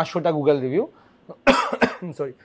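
A man's short stretch of talk, then a quick cough about one and a half seconds in, with two sharp bursts close together.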